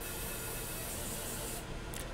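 Fiber laser marking a serial number into an aluminum disc: a thin, high hiss that cuts off about a second and a half in as the mark finishes.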